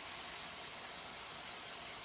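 Faint, steady sizzling hiss of broccoli rabe simmering in a little broth in a sauté pan.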